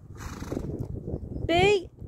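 Horse trotting on a soft arena surface: faint, muffled hoofbeats under outdoor wind noise, with a brief hiss in the first second. Near the end a caller's voice starts reading out the next test movement.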